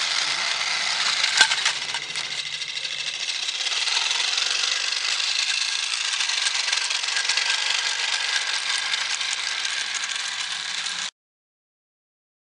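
Small live-steam garden-railway locomotive with a vertical boiler, running with a steady hiss of steam and a light metallic rattle from its running gear. There is one sharp click about a second and a half in, and the sound cuts off suddenly near the end.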